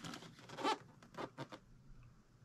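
Hands handling and turning a cardboard quilt-kit box: a few short scraping rubs of fingers and palms against the box, the loudest a little past half a second in.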